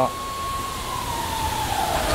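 A siren wailing, a single high tone that holds steady and then slides down in pitch over the last second.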